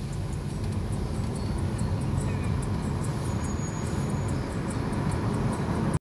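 Car driving along a road, heard from inside the cabin: a steady low engine and road rumble.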